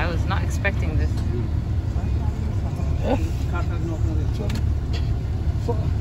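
Vehicle engine running, heard from inside the cab as a steady low rumble, with faint snatches of voices now and then.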